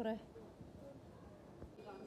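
A woman's speech ending just as it begins, then the faint, even background hum of a shopping-centre corridor, with one soft knock late on.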